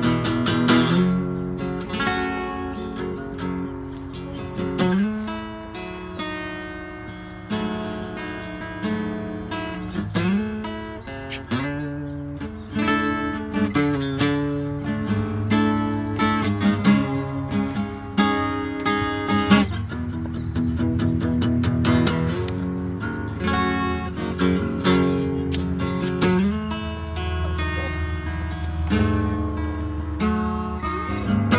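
An acoustic guitar being played solo: a continuous passage of chords and plucked notes.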